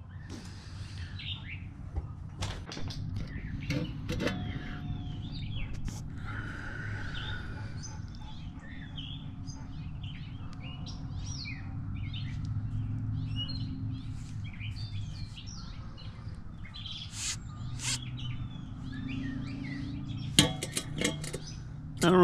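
Small birds chirping and twittering on and off, over a steady low background rumble, with a few sharp clicks and knocks here and there.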